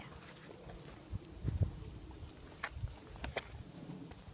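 A horse cantering on a sand arena, heard as a few soft, low hoof thuds, with two sharp clicks near the end.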